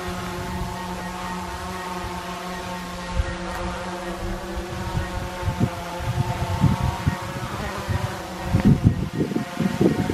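DJI Mavic 2 Pro drone hovering close by, its propellers giving a steady hum of several tones that wavers slightly in pitch near the end. From about halfway through, wind buffets the microphone in low gusts.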